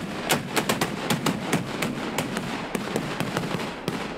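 A volley of black-powder Böller shots from hand-held blank-firing hand mortars (Handböller), fired by several shooters at once. The shots are loud and sharp and come in quick, irregular succession, several a second.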